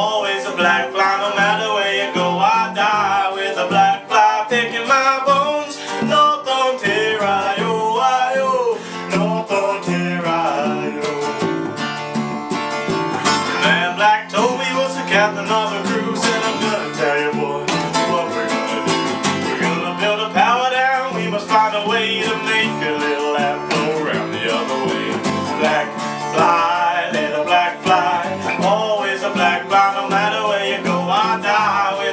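Folk song played on two strummed acoustic guitars, with a woman's and a man's voices singing over them.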